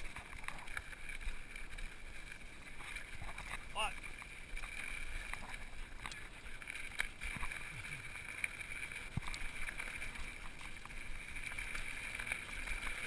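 Mountain bike rolling down a rocky dirt trail: tyres on gravel and the bike rattling and knocking over bumps, over a steady high buzz. A short warbling squeak comes about four seconds in.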